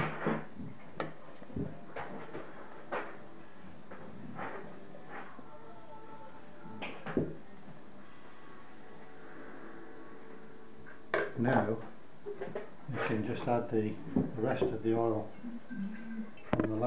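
Light clicks and knocks of a glass bottle, plastic syringe and tubing being handled on a wooden table during the siphoning of hydrosol, followed over the last five seconds by a person's voice with no clear words.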